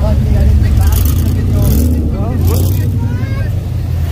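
Car engine idling with a steady low rumble.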